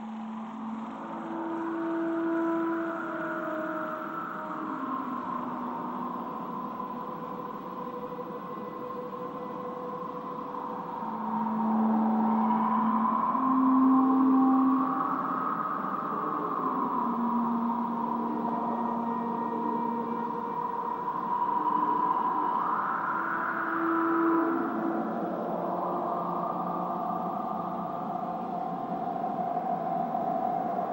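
Eerie atmospheric soundtrack: long-held low notes that change pitch every few seconds over a drone that swells and sinks like howling wind.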